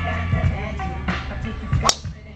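A driver striking a golf ball off the tee on a full long-drive swing: one sharp crack near the end, the loudest sound here. Background music with a beat plays throughout.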